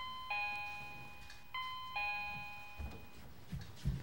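Electronic two-note doorbell chime, a higher note falling to a lower one, rung twice, the second about a second and a half after the first. A few soft thumps follow near the end.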